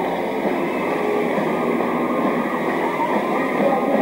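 Rock band with electric guitars playing live, heard as a steady, dense wash of sound with little clear melody.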